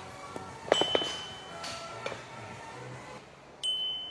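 Two short, bright ding sound effects, about a second in and again near the end, each ringing on briefly. Each one marks the on-screen stare counter going up. A clink of metal comes with the first ding.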